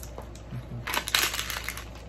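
Clear plastic packaging crinkling as it is handled, with a dense burst of crackling about a second in that lasts under a second.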